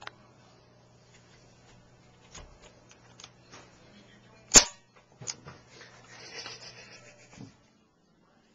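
A single sharp shot from an airsoft gun about halfway through, followed by a smaller click and a brief rustle, over a low steady hum.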